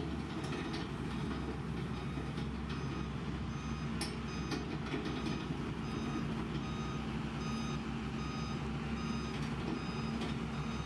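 Motor grader's diesel engine running steadily under load as its blade scrapes and pushes loose soil and gravel, with a reversing alarm beeping at regular intervals throughout.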